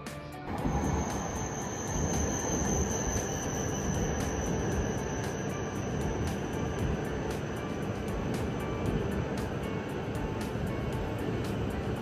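E5 series Shinkansen bullet train running past along the platform: a loud, steady rush and rumble that starts suddenly about half a second in, with a high whine over it for the first few seconds. Background music with a steady beat plays under it.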